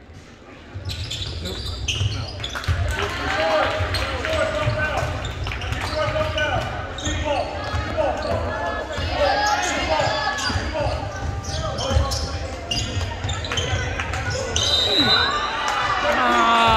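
Basketball game in a school gymnasium: many overlapping voices from players and spectators, over a basketball bouncing and feet thudding on the hardwood court. It starts fairly quiet, and the voices and thuds pick up about a second in.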